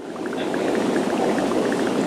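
Steady bubbling and trickling of aquarium water, from tank aeration and filter returns, with many short bubble pops; it fades in from silence at the start.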